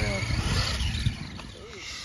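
Brushless-powered Traxxas Stampede 4x4 RC truck running on concrete, its electric motor whining over the rolling of its tyres, with a sharp knock about a second in, after which it goes quieter.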